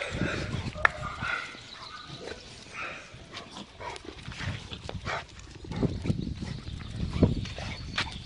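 Dogs moving about close to the microphone, with footsteps and paws on brick paving and scattered clicks and knocks, growing busier in the second half.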